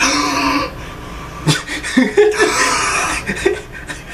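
A man's loud, forceful gasping breaths, a hissy rush of air at the start and again about halfway through, mixed with a man's chuckling laughter.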